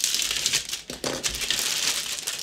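Clear plastic bag crinkling as a bagged plastic model-kit sprue is handled and turned over.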